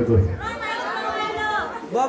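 Speech: a man talking into a microphone over a loudspeaker, with crowd chatter behind.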